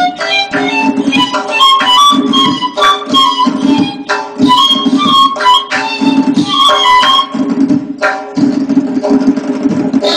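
Persian ney (end-blown reed flute) playing a melody in the Chahargah mode, accompanied by fast, continuous strokes on a tombak goblet drum.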